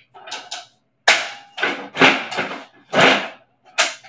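Adjustable dumbbells clacking and rattling as their weight dials are turned to 16 pounds and the dumbbells are handled in their cradles: a string of sharp knocks, loudest about a second in and again about three seconds in.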